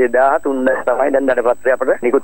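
A man speaking continuously, with a faint steady high whine beneath.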